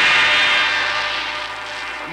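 Gong ringing out after a single strike and slowly dying away, used as a musical bridge in a radio drama.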